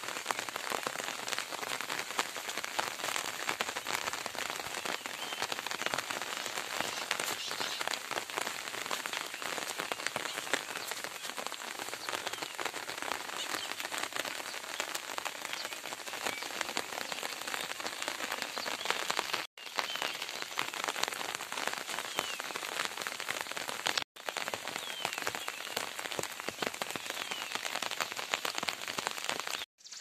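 Steady rain falling on a field of crops and wet ground, an even hiss of many small drop impacts. It drops out briefly twice, about two-thirds of the way through.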